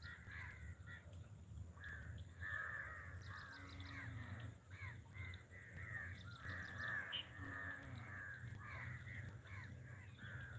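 Several crows cawing, many short harsh caws overlapping and following one another without a break, over a steady high-pitched whine.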